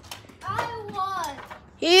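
Children's voices: drawn-out, gliding vocal sounds in the middle, then a child speaking loudly near the end.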